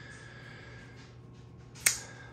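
Kubey Raven flipper folding knife flicked open on its caged ceramic ball-bearing pivot: one sharp click near the end as the blade snaps out against its stop and the liner lock engages.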